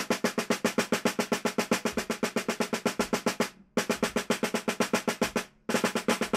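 Snare drum played with wooden sticks in fast, even single strokes, about nine a second: compact microstrokes played softly. The run breaks off briefly about three and a half seconds in and again near five and a half seconds, then resumes.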